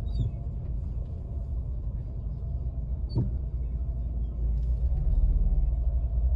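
Low steady rumble of a car heard from inside its cabin as it creeps forward in slow traffic, growing a little louder near the end, with one short click about halfway through.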